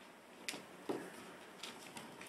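Five-week-old miniature dachshund puppies' paws and claws pattering on a hardwood floor as they scamper. A sharp tap comes about half a second in, a louder knock just before a second in, and a few lighter ticks near the end.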